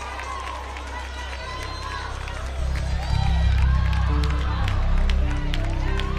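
Live gospel band music under many overlapping voices calling out, with scattered hand claps. A heavy bass comes in strongly about two and a half seconds in, and held keyboard chords follow about a second later.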